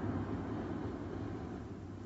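A steady low rumbling noise, fading slightly toward the end.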